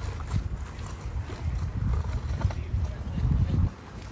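Wind buffeting the microphone: a low rumble that swells and fades in gusts and drops away sharply near the end.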